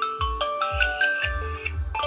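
Samsung Galaxy phone playing its ringtone, a marimba-like melody over a steady beat, set off from the Galaxy SmartTag's find-my-phone function.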